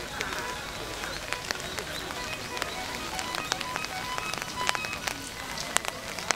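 Outdoor ambience: many irregular sharp ticks and taps over a steady background hiss, with faint distant voices.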